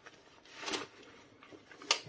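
Soft rustling of fabric and neoprene as a zipped neoprene pouch is pushed down into a cloth-lined crochet net bag. The rustle swells about half a second in, with a brief sharper sound just before the end.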